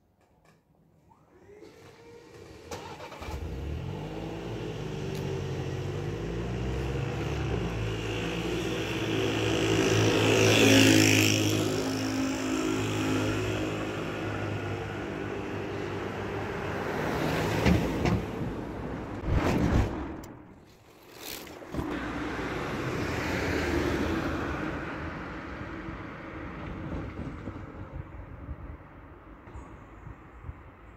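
A train passes the level crossing, building from a couple of seconds in to loudest about eleven seconds in and then fading. Afterwards cars drive across the crossing, with a few sharp knocks around eighteen to twenty seconds in.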